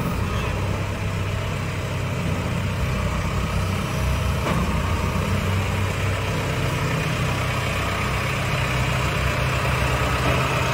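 A telehandler's diesel engine running steadily, a low, even hum that does not rise or fall.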